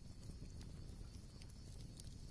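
Near silence: a faint low background hum with a few soft ticks.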